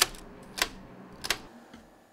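Sharp plastic clicks from a cassette tape being handled and loaded: three clicks a little over half a second apart, the first the loudest.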